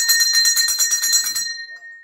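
Metal temple bell rung rapidly in a shrine during lamp-lighting worship, with quick even strokes, about eight a second. The strokes stop about one and a half seconds in and the ringing fades out.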